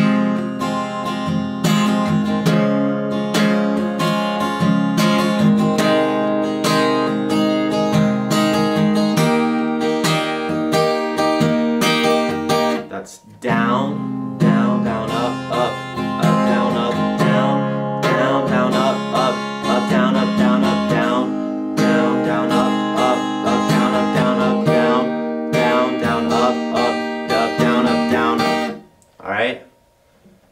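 Steel-string acoustic guitar with a capo on the first fret, strummed through the chorus chord progression E minor, C, G, D. The strumming pauses briefly about halfway through, then the progression is played again, and it falls away near the end.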